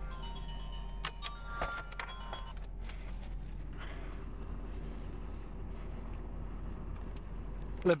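A car's engine idling, heard from inside the cabin as a steady low hum. Clicks and short high tones come in the first three seconds, and the hum stops abruptly at the very end.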